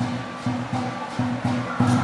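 Chinese lion dance drum played in a fast, driving beat of low strokes, about three to four a second, with clashing cymbals ringing over it, keeping time for the lion's moves on the poles.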